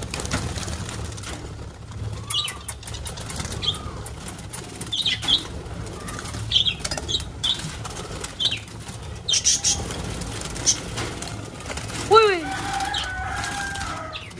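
Parrots' wings flapping in quick bursts as they flutter out of a small wire cage into an aviary, with short high chirps repeated throughout. Near the end a louder bird call falls in pitch.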